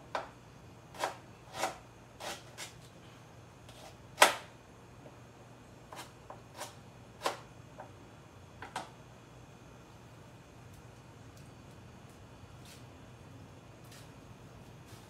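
A kitchen knife knocking on a plastic cutting board as food is cut: about a dozen irregular, sharp knocks over the first nine seconds, the loudest about four seconds in. After that there is only a faint steady hum.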